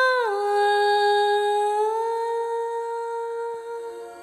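Unaccompanied female voice singing a wordless vocalise in long held notes, from the intro of a song. The note drops a step about a third of a second in, rises slightly about two seconds in, and fades toward the end.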